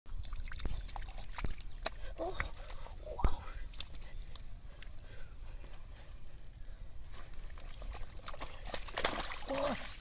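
Wet mud and muddy water splashing and squelching in shallow water as a heap of mud is dumped from a sack and worked over by hand, with irregular splats and trickling throughout. A man's voice makes short sounds and says "Oh" near the end.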